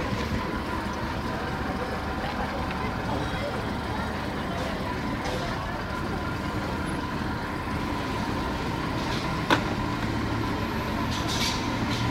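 Heavy truck's diesel engine running steadily, with a single sharp knock about nine and a half seconds in.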